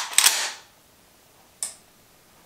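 Lever-action rifle being cycled: loud metallic clacks of the action working open and shut in the first half-second, then one short sharp click about a second and a half in.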